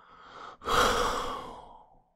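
A man sighing: a soft breath in, then about half a second in a longer, louder breath out that fades away.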